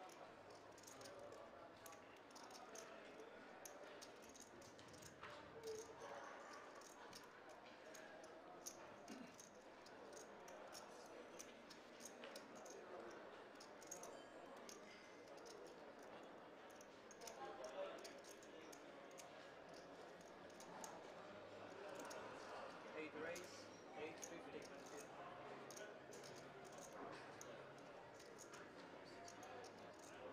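Faint murmur of voices around a poker table, with scattered light clicks of clay poker chips being handled and stacked.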